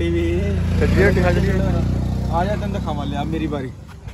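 A motor vehicle's engine running close by: a low, steady hum that dies away near the end, heard under people talking.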